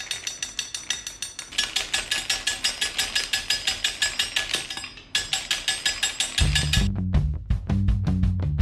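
Rapid, even chopping of a blade through hard rope candy on a work table, about five cuts a second, with a short break about five seconds in. Backing music with a deep bass line comes in near the end.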